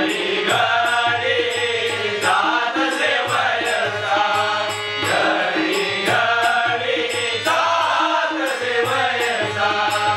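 Marathi devotional bhajan sung by a group of men, accompanied by harmonium, tabla and jhanj hand cymbals, the cymbals striking a steady quick beat of about two to three a second.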